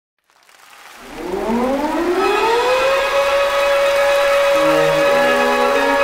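An air-raid siren winds up in a rising wail over about two seconds, then holds a steady pitch. Low sustained musical notes come in underneath it past the halfway point.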